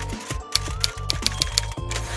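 Typewriter key clicks, an irregular run of sharp strikes, over background music with a steady low bass.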